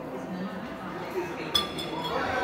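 A single sharp clink with a brief ringing, about one and a half seconds in, over a faint murmur of voices in a large hall.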